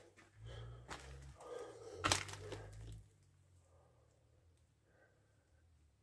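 Cracking and crunching of debris, with a low rumble of handling noise, for about three seconds; a sharp crack about two seconds in is the loudest.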